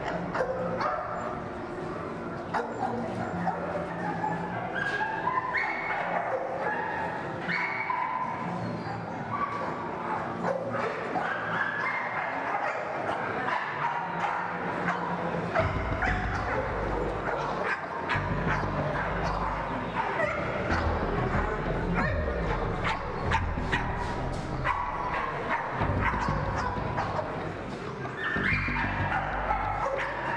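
American Pit Bull Terriers barking repeatedly over background music with a melody. A deep bass line enters about halfway through.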